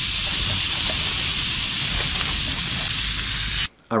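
A steak sizzling in a hot frying pan over a camping gas-canister stove: a steady hiss that cuts off abruptly shortly before the end.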